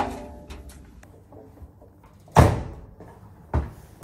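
Front-loading washing machine door being pushed shut, with a loud thump about halfway through and a smaller one near the end; the door won't latch.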